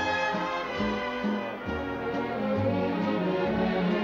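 Orchestral music with brass to the fore, in held chords and notes that change every second or so.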